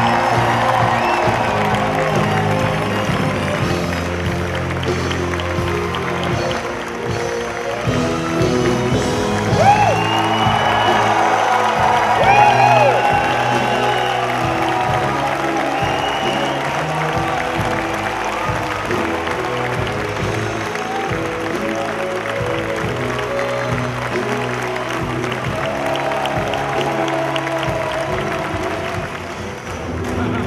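A theatre pit orchestra playing the curtain-call music over a crowd applauding and cheering, with shrill whoops loudest about ten to thirteen seconds in.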